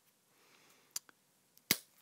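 Plastic clicks as the ear cup's teeth snap onto the ear cushion's plastic collar under a flathead screwdriver tip: a light click about a second in, a fainter one just after, and a sharper, louder click near the end. Each click is the sign that a tooth has grabbed the collar.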